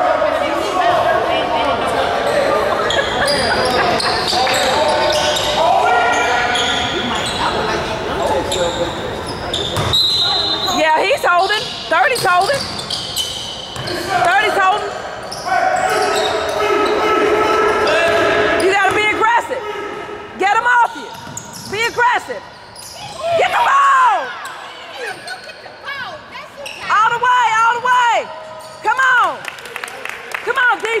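Basketball game on a hardwood gym floor: the ball bouncing and sneakers squeaking in short, repeated squeals that come thicker in the second half, all echoing in the large hall, with voices in the background.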